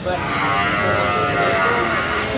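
A young cow mooing once, a long, level call lasting about a second and a half, over crowd chatter.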